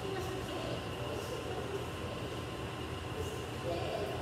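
Steady low mechanical hum with a thin, constant high whine from the running equipment of an indoor swimming-pool hall.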